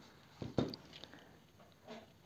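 Two soft knocks about half a second in, then a few faint clicks, from hands handling jewelry wire and hand tools over quiet room tone.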